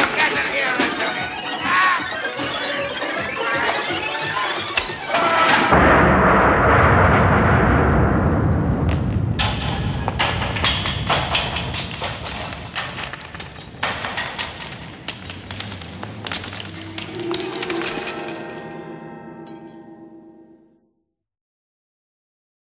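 Comic brawl sound effects: shouting and band music over scuffling, then about six seconds in a loud explosion that dies away slowly under a run of crashes and breaking clatter. It ends with a low held tone that fades out about a second before the end.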